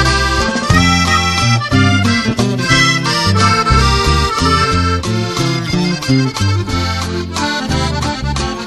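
Instrumental norteño karaoke backing track: an accordion plays the melody over a bass line in a steady rhythm, with no vocals.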